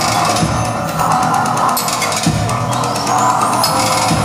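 Live band playing loud, dense music with heavy drum-like hits. A thin high tone glides upward in pitch about three seconds in.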